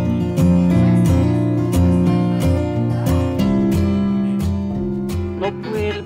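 Acoustic guitar strummed in a steady rhythm of chords, with a man's voice starting to sing near the end.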